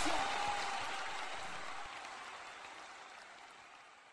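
The end of the campaign song dying away: a hiss-like wash of noise left after the last beat, fading steadily to silence about three and a half seconds in.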